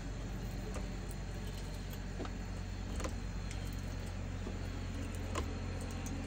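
Unger water-fed pole brush with a microfiber pad worked down window glass: a faint steady rumble and hiss with a few light clicks and taps from the pole and pad.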